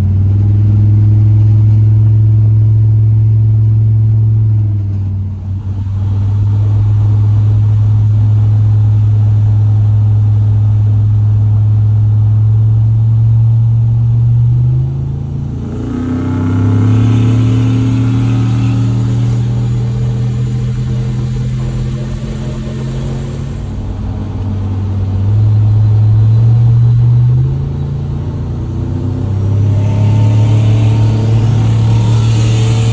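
Turbocharged squarebody Chevrolet pickup's engine droning at highway cruising speed, heard from inside the cab. Its pitch climbs a few times as the throttle changes, around the middle and again near the end.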